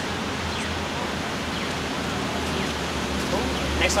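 Steady outdoor city background noise: an even hiss over a constant low hum, with faint voices from the crowd. A voice says "next" at the very end.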